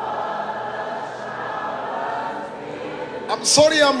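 A choir and congregation singing softly and steadily in worship, holding long notes. Near the end a man's voice breaks in loudly over them.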